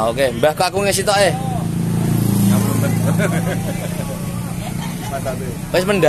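A motor vehicle engine running close by: a low steady hum that swells about two seconds in and then fades, heard under voices.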